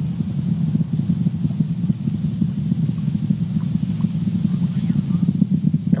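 Falcon Heavy rocket's engines heard from the ground during ascent: a steady, low, rough rumble.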